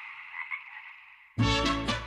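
Mexican burrowing toad (sapo excavador) calling, fading out over about a second. About a second and a half in, music cuts in suddenly.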